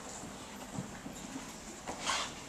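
Hush of an auditorium before a band starts to play: faint room noise with a couple of soft knocks, from players and audience settling.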